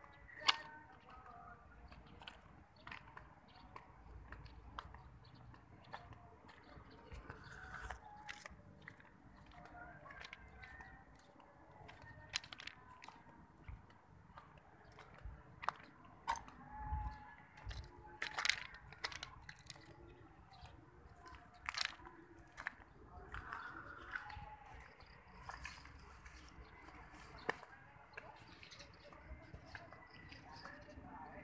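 Faint footsteps crunching on gravel and track ballast, coming at an irregular pace over a low background hum.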